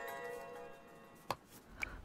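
A mobile phone ringtone's sustained tone fading out, followed by a single sharp click and a fainter tick.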